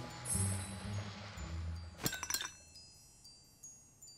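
Cartoon ice sound effect: sparkling high chimes and glassy clinks of freezing ice over low sustained music notes, with a short cluster of crackling clinks about two seconds in, then faint high tinkles dying away.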